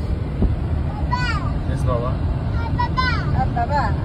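Road and engine noise inside the cabin of a moving car: a steady low rumble, with a voice over it a few times.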